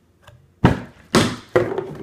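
A plastic orange juice bottle, flipped, comes down with a loud thunk and knocks twice more as it tumbles, three hits about half a second apart.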